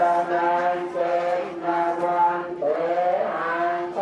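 Buddhist chanting: a male voice intoning in long held notes, moving between a few pitches in phrases of a second or so.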